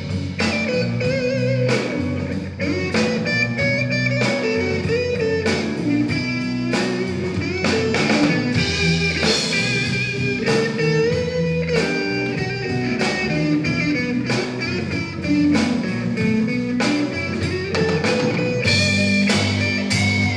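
Live blues band: a semi-hollow-body electric guitar plays the lead line over bass guitar and a steady drum-kit beat, with no singing.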